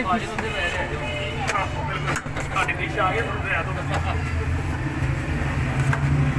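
Indistinct voices talking over a steady low rumble of street traffic or a running engine, with a few faint clicks.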